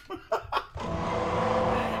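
A man laughing: a few short chuckles, then a longer breathy laugh from about a second in.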